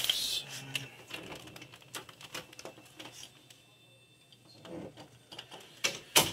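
Handling noise from a handheld camera being moved about: scattered clicks and rustles, busiest at the start and again near the end, with a quieter stretch in the middle.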